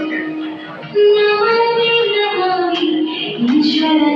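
Recorded song playing for a solo dance: a high sung vocal holding long, gliding notes over instrumental backing. The music is softer for about the first second, then comes in louder and fuller.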